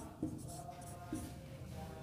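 Marker pen writing on a whiteboard: faint scratching strokes as words are written out.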